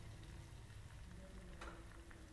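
Faint sizzle and light crackle of two eggs frying in hot ghee in a steel kadai, with a single small click about one and a half seconds in.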